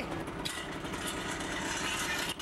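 Engine of a junkyard-built off-road Jeep golf machine running hard as it drives a giant ball off the dirt, with a louder rushing noise joining about half a second in.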